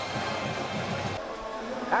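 Stadium crowd noise, a steady din of many voices. It drops abruptly a little over a second in to a quieter crowd murmur.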